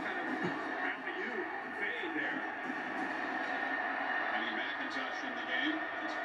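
Steady stadium crowd noise from a televised football broadcast, played through a TV's speaker, with faint indistinct commentator voices in the first couple of seconds.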